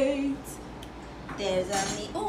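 A woman's held sung note ends about a third of a second in. Then come a couple of light clicks and a brief vocal sound.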